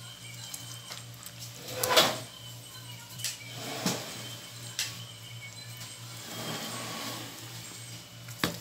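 Handling sounds of a plastic mixing bowl being scraped of leftover kimchi chili paste: a few brief scrapes and knocks, the loudest about two seconds in, over a steady low hum.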